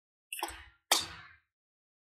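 Tarot cards being handled as a card is drawn from the deck: two quick, sharp card snaps, the second louder.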